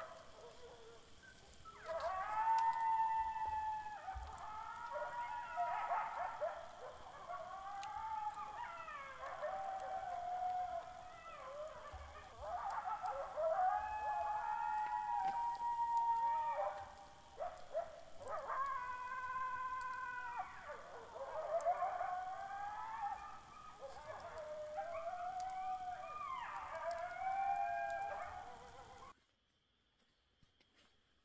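A pack of coyotes howling and yipping together, several voices overlapping in wavering calls that rise and fall in pitch. The chorus starts about two seconds in and cuts off suddenly near the end.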